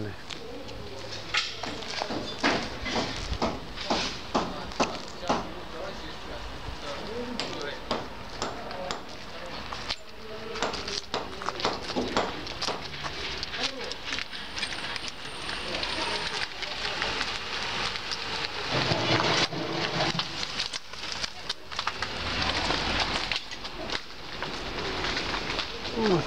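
Footsteps crunching over broken glass and brick rubble, with irregular clicks and scrapes, and people talking in the background.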